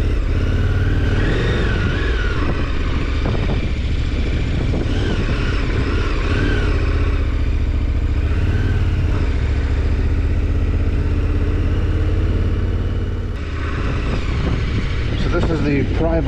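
KTM 1290 Super Adventure R's V-twin engine running steadily at low road speed, heard from the rider's position, with a brief dip in level about three-quarters of the way through.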